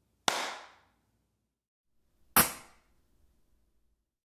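A single hand clap with its short room reverb tail, played as an impulse-response recording. About two seconds later comes a second sharp burst with a similar quick decay: the noise-burst impulse response of the same kind of room.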